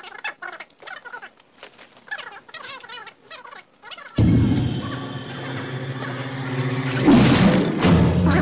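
Quiet, broken sounds for the first half, then about four seconds in a sudden loud, low sustained chord from a horror-film soundtrack, the jump-scare music swelling louder near the end.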